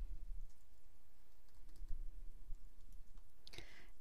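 Faint typing on a computer keyboard: scattered light key clicks over a low steady hum.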